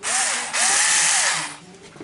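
Black & Decker KC460LN 3.6 V cordless screwdriver running in two short bursts, a brief one and then one about a second long. Each burst spins up and winds down.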